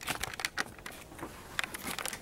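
Camera handling noise: irregular knocks, clicks and rustling as the camera is picked up and moved, with hand or clothing rubbing close to the microphone.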